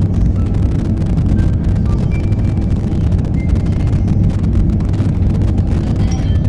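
Steady low rumbling noise with a few faint, brief high tones scattered over it: the field-recording texture of an ambient music track.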